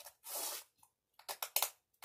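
A diamond painting canvas being pressed into a picture frame by hand: a short soft rustle, then a quick run of light clicks and taps.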